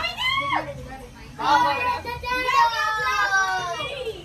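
A group of women whooping and squealing in high, drawn-out calls, several voices at once, with a short whoop at the start and longer calls sliding down in pitch from about a second and a half in.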